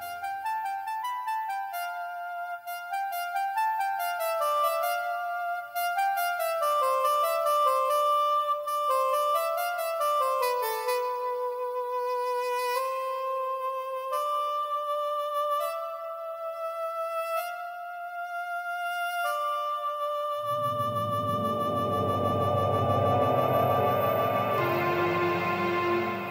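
Orchestral music from a symphonic poem: two melody lines moving stepwise over held notes. About twenty seconds in, a dense, dark low texture enters beneath a single held high note.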